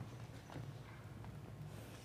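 Faint footsteps of shoes on a stage floor, a few steps, over a steady low hum.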